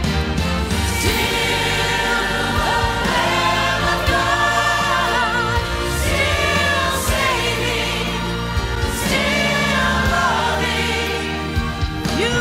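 Church choir singing with musical accompaniment: wavering sung lines over sustained low notes, continuing without a break.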